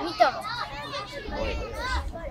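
Children's voices calling and shouting to one another during a youth football match, several short high calls overlapping.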